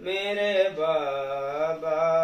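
A man's solo voice chanting a salaam, an Urdu devotional elegy, in long drawn-out held notes. The pitch steps lower about a second in and climbs back near the end.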